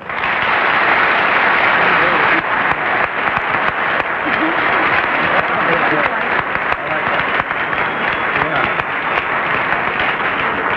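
Studio audience applauding, breaking out suddenly and loudly as the piano stops, with a few voices heard through the clapping.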